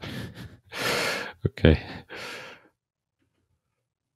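A man breathing and sighing audibly into a close microphone, several breathy exhales around a spoken "okay", with one small click just before the word.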